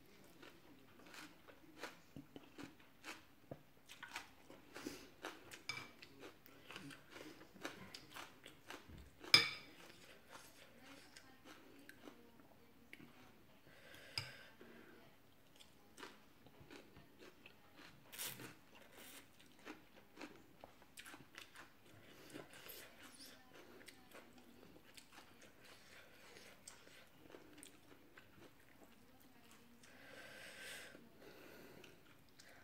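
A person eating Thai khanom jeen nam ya, rice noodles in curry sauce: slurping noodles and chewing with many small wet clicks. One sharp, much louder click comes about nine seconds in.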